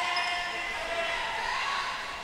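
Volleyball teammates on the bench cheering together in one long, drawn-out call that slowly fades, celebrating a point won back, in a gym.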